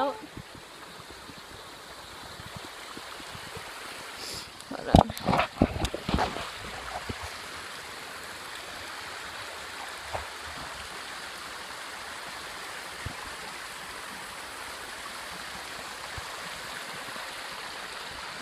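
A small brook running over rocks between snowbanks, a steady rushing of water. About five seconds in, a few loud bumps and rustles break over it.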